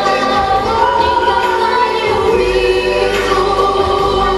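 Music with choral singing in long, held notes. A low bass grows stronger about halfway through.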